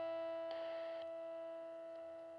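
The song's final chord on a distorted electric guitar, held and slowly fading, with a brief wash of noise about half a second in.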